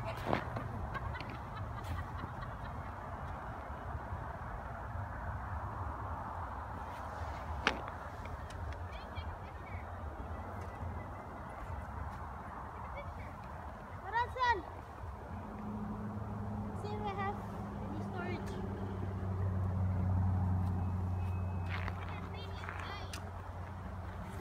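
Steady low rumble of road traffic, swelling as a vehicle passes in the second half. A distant voice calls out briefly about halfway through.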